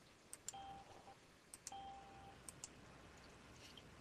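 Near silence broken by a few faint mouse clicks, coming in quick pairs about a second apart. A faint high tone sounds twice, briefly.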